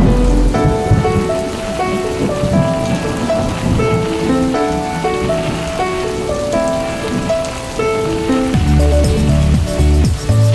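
Steady rain falling on wet ground and puddles, under background music of short melodic notes; a deeper bass line joins near the end.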